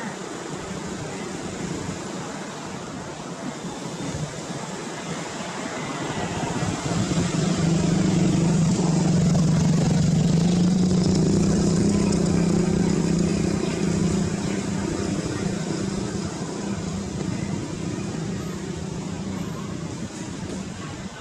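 A motor vehicle's engine hums and grows louder from about six seconds in, then fades away after about fourteen seconds, as it passes by, over a steady outdoor background noise.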